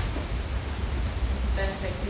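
Steady low rumble and hiss of room noise picked up by the meeting microphones. A voice begins to speak near the end.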